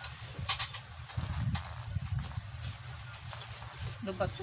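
Ceramic tableware and plastic bubble wrap being handled close by: a few sharp clicks and clinks, the clearest about half a second in, over a low steady hum.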